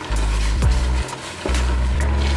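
Background music with a deep bass line and a regular beat of light high ticks; the bass drops out for about half a second near the middle.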